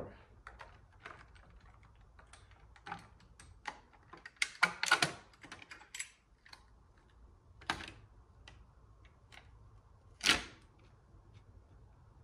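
Light metallic clicks and taps as an automatic transmission's valve body is rocked loose and lifted off the case, with a cluster of sharper knocks about five seconds in and single louder knocks near eight and ten seconds.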